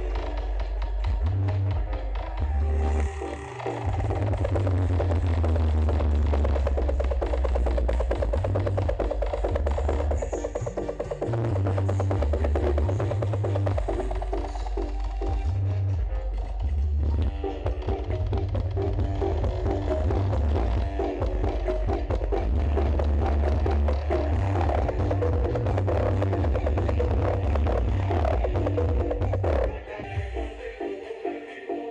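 Loud music played through a huge outdoor sound-system rig (the Indonesian "sound horeg" battle system), dominated by very heavy deep bass.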